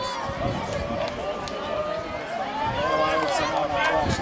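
Several children's voices calling out and chattering at once, overlapping in a small group of spectators, getting louder toward the end.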